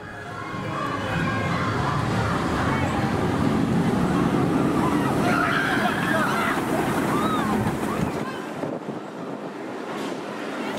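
A train on the Vampire suspended roller coaster running through the cutting beneath the track: a loud, steady roar from the train on the steel track that builds in the first second and drops away near the end, with riders' voices around the middle.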